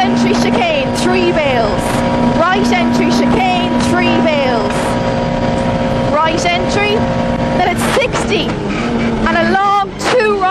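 Vauxhall Nova rally car's engine running flat out at steady high revs, heard from inside the cabin. The note changes about eight seconds in and the level dips briefly near the end.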